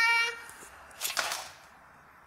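A man's high-pitched laugh, held on one note, trailing off near the start. It is followed about a second in by a short breathy exhale.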